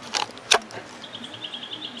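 Two sharp plastic clicks as a Ryobi battery pack is unlatched and pulled off a cordless saw, the second the louder, about half a second in. From about a second in, a faint, fast, high chirping goes on at about ten pulses a second.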